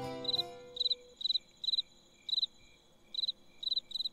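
Crickets chirping: a string of short trilled chirps, with a pause of about half a second around the middle.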